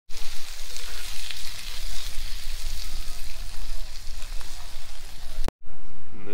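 Meatballs sizzling and crackling as they fry in a cast iron skillet on a single-burner propane camp stove.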